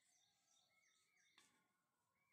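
Near silence: faint outdoor ambience with a few soft, short chirps of birds and one faint tick about one and a half seconds in.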